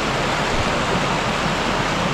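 Mountain stream rushing over rocks in shallow rapids: a steady, even sound of running water.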